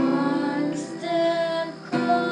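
Background song: a female voice singing two long held notes over acoustic guitar.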